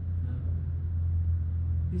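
Steady low rumble throughout, with a single short spoken word near the start.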